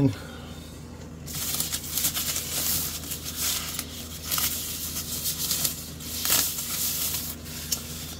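Thin plastic wrapping crinkling and rustling as hands unwrap it, starting about a second in and going on unevenly until near the end.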